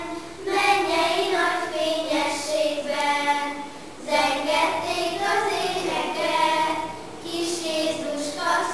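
A children's choir of schoolgirls singing together, in sung phrases with short breaks just after the start and again around four seconds in.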